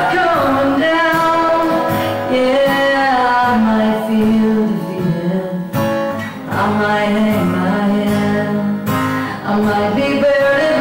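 A woman singing a country song live, accompanying herself on a strummed acoustic guitar, with long held notes.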